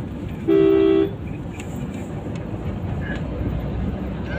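A car horn sounds once for about half a second, a steady pitched toot, over the steady rumble of engine and road noise inside a moving car's cabin.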